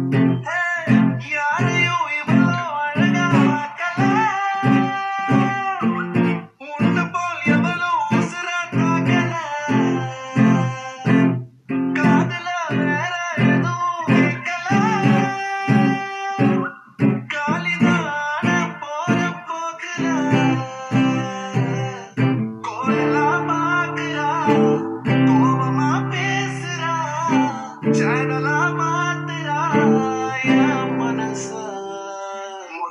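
Acoustic guitar playing the intro of a Tamil film-song cover, with a wordless hummed melody over it. The guitar plays short picked notes at first, then longer ringing strummed chords from about two-thirds of the way in.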